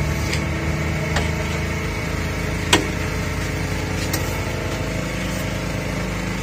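A steady, engine-like mechanical hum, with a few sharp metal clicks of a utensil on a steel griddle, the loudest about two and three-quarter seconds in.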